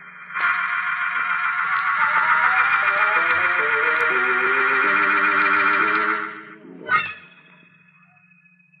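A canary singing a long, rapid warbling trill over a few low held musical notes, cutting off about six and a half seconds in, followed by a short sharp burst.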